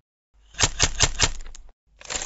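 Animated logo sound effect: a quick run of about six sharp clicks like typewriter keys over about a second, followed near the end by a short burst of hiss.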